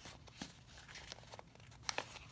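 Paper sticker sheets being handled and flipped over: faint rustling with a few light, quick strokes, the sharpest near the end.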